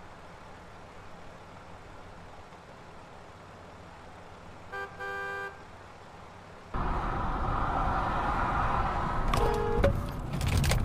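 A car horn honks twice about five seconds in, a short toot then a longer one, over faint traffic hum. About two seconds later loud, steady road and engine noise from inside a moving car starts suddenly, with another short horn note and a few sharp clicks near the end.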